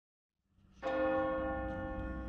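Silence, then a low rumble fades in and, just under a second in, a large church bell is struck once and rings on with a slow decay.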